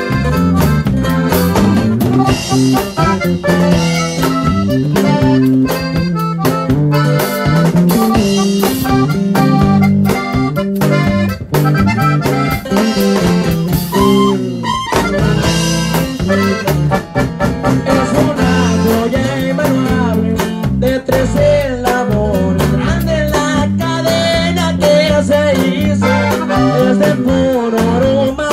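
A live Mexican regional band plays an instrumental passage without vocals, with accordion leading over guitar and drums.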